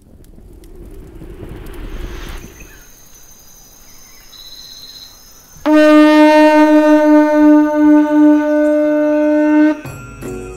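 Conch shell trumpet blown in one long, loud, steady note that starts about halfway through and stops abruptly near the end, preceded by a quieter low rumbling noise.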